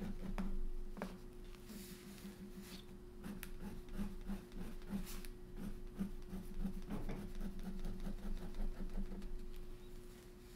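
A fine 01 fineliner pen hatching on sketchbook paper: short scratching strokes repeated quickly and evenly, a few a second.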